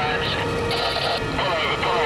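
Steady rumble of a vehicle driving on the road, with indistinct voices over it.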